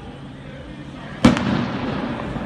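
A single loud explosive bang about a second in, made of two reports in quick succession, of the firecracker or firework kind. It rings on and fades, echoing off the buildings along the street.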